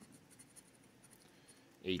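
Faint, repeated scratching as a scratcher tool scrapes the coating off a scratch-off lottery ticket.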